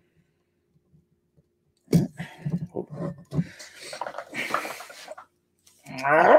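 Near silence for about two seconds, then a man's straining grunts and breaths, with clicks and knocks, as he pulls a stubborn, aged cork out of a beer bottle with a pocketknife corkscrew.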